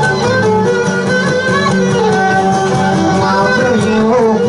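Live Greek folk music on laouto lutes: a strummed accompaniment under a running melody, an instrumental passage between sung verses.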